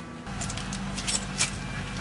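A pickup truck's engine running at idle, a steady low hum that comes in shortly after the start, with a few light jingling clicks over it.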